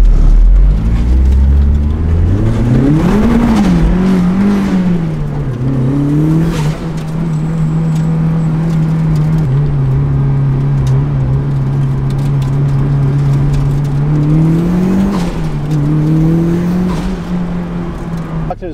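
Turbocharged four-cylinder engine of a 2004 Mazdaspeed Miata heard from inside the cabin, its revs climbing over the first few seconds as the car pulls away. It then holds a steady pitch as the car cruises, with another brief rise in revs about fifteen seconds in.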